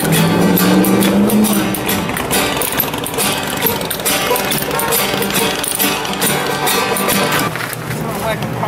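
Acoustic string band busking: banjo picking and acoustic guitars strumming over a plucked upright bass.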